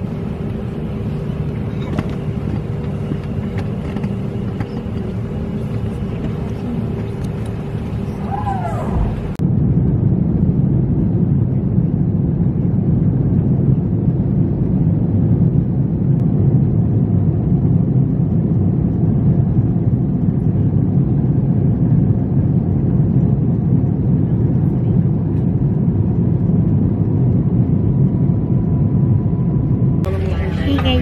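Airliner cabin noise heard from a window seat: a steady hum with a faint held tone while the plane is on the ground, then, from an abrupt change about nine seconds in, a louder and deeper steady rumble of the engines and airflow in flight.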